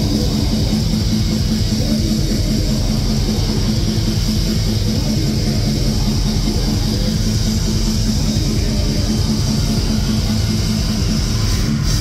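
Heavy metal band playing live and loud: distorted electric guitars, bass guitar and drums, steady throughout.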